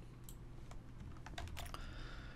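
Faint computer keyboard keystrokes, a handful of scattered clicks with more toward the end, as a selected block of code is copied with Ctrl+C.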